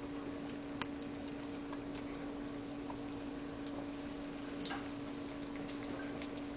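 Kittens' claws and paws clicking and tapping irregularly on a wooden board, with one sharper click about a second in, over a steady hum.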